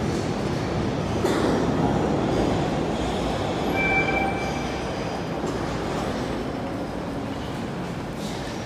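A Boston MBTA subway train rumbling through the underground station, the noise easing slightly toward the end. A faint, brief high squeal, typical of steel wheels on curved track, comes about four seconds in.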